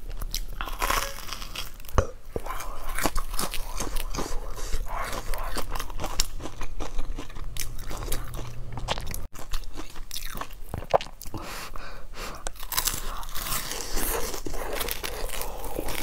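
Close-miked biting and chewing of a crusty fried bun, with the crust crunching through many small bites and chews.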